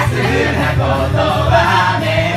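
Several people singing together into karaoke microphones over a karaoke backing track.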